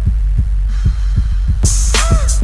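Channel intro music: a hip-hop beat with a heavy, sustained bass and a steady kick drum, about two beats a second, with a cymbal crash near the end.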